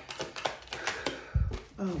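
Tarot cards being shuffled by hand: a quick run of crisp card clicks, then a low thump about a second and a half in.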